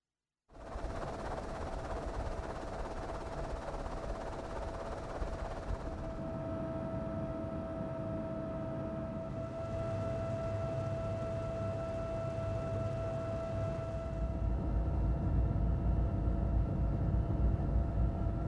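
Helicopter cabin noise in flight: a steady engine whine over a low rotor rumble, starting about half a second in. The low rumble grows louder in the last few seconds as the helicopter comes down over the rig's helideck.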